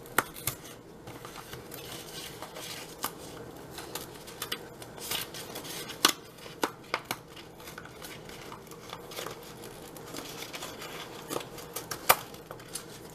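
Packaging of a chicken pot pie being opened and handled by hand: scattered sharp clicks, taps and short rustles of cardboard and plastic.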